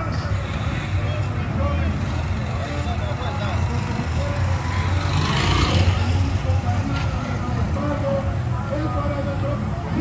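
Busy street at night: a steady low engine rumble under scattered voices. A motor vehicle passes close about five to six seconds in, the loudest moment.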